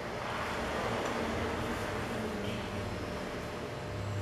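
Steady background noise with a faint low hum and no distinct events.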